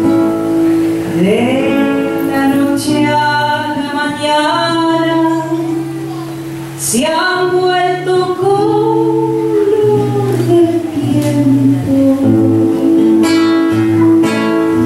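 A woman sings a Cuyo tonada, accompanied by an acoustic guitar. Her voice slides up into two long phrases, one about a second in and one about halfway through, with the plucked guitar carrying on between them.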